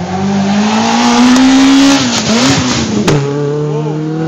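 Citroën AX F2000 rally car at full throttle, its engine note climbing as it accelerates past. About two seconds in the revs dip with crackling, a sharp crack follows near three seconds, and the engine then runs on at a lower, steady pitch as it pulls away.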